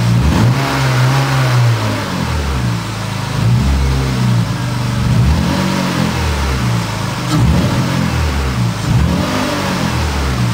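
BMW M52B28 2.8-litre straight-six, fitted with a Schrick intake manifold, running and being revved up and let fall back several times, a rise and fall every second or two.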